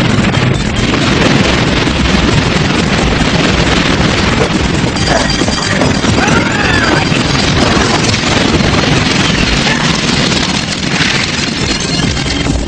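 Dense, loud cartoon action sound effects: continuous rumbling and crashing noise, with a few short warbling pitch glides about halfway through.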